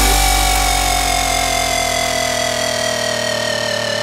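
A long held electronic synth note in a dance track, opening with a deep bass hit that fades over a few seconds, the note sliding slowly down in pitch with a slight wobble in its upper tones.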